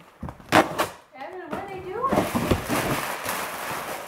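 Wrapping paper and duct tape being ripped off a cardboard gift box: a sharp rip about half a second in, then a longer stretch of tearing through the second half. A small child's voice sounds briefly over it.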